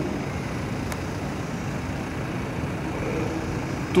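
Steady background noise with no clear pitch, even in level throughout, with one faint click about a second in.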